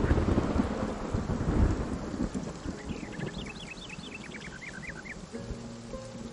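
A thunderclap over steady rain: a sudden crack that rolls on as deep rumbling, loudest in the first two seconds, then fades into the rain. Around the middle comes a brief run of quick, high chirps.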